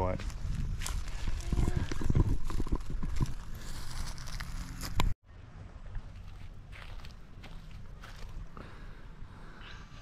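Footsteps on dry leaf litter, with wind on the microphone and knocks from handling, loud for about five seconds. Then it cuts suddenly to quieter outdoor background.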